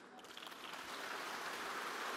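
Audience applause, building up over the first second and then holding steady.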